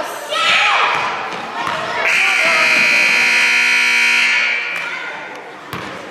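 Gymnasium scoreboard buzzer sounding one steady tone for about three seconds, starting about two seconds in: the game clock has run out at the end of the first period.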